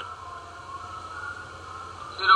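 Steady background hiss with a low, constant hum: the recording's room tone during a pause in speech.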